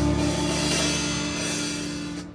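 A rock song's last chord: a held guitar chord from the backing track rings on with a drum-kit cymbal crash washing over it, both slowly dying away as the song ends.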